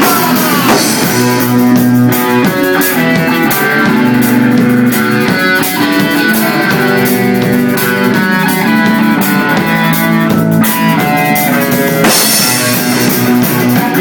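Rock band playing live and loud: a drum kit with cymbals under an amplified electric bass and guitar riff, with no vocals.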